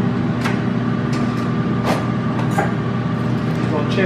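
Microwave oven running with a steady electrical hum while it cooks, with a few light clicks and knocks of kitchen utensils on the counter.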